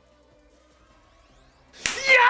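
Online slot game sound effects: faint game music with a soft rising sweep, then a sudden loud whooshing hit near the end as symbols burst across the grid on a big win.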